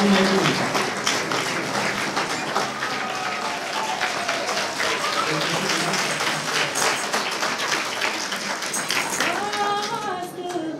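Audience applauding, with voices over the clapping; just before the end a woman begins singing.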